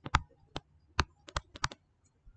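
A stylus or pen on a writing tablet clicking and tapping while handwriting, about eight sharp, irregular clicks in two seconds.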